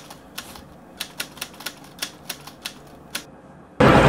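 Typewriter keystroke sound effect for text being typed on screen: about a dozen sharp, irregularly spaced key clicks over faint hiss.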